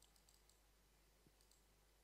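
Near silence: faint room tone with a few very faint clicks.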